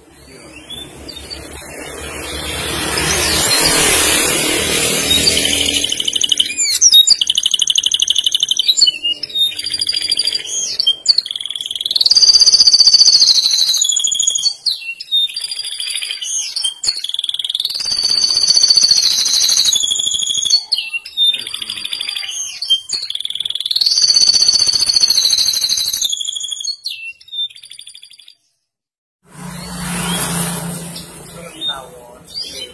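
Domestic canary singing long rolling phrases: fast trills that step up and down in pitch, several lasting two to three seconds. A broad rush of noise swells and fades in the first few seconds, before the song starts.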